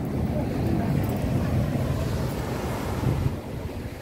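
Wind buffeting the microphone, a steady low rumble, with ocean surf washing behind it.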